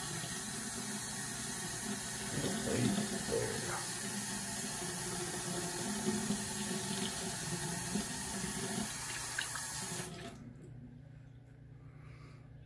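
Bathroom sink tap running steadily as water is used to wet the face during a wet shave, then turned off about ten seconds in.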